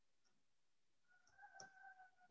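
Near silence: room tone with a couple of faint clicks and, in the second half, a faint steady tone.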